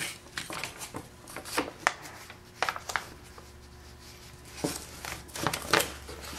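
Sheet of paper being handled and moved on a wooden work board: rustling and crinkling with scattered light taps and knocks.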